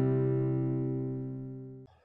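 Intro music ending on a strummed guitar chord that rings out and fades steadily, then cuts off abruptly near the end.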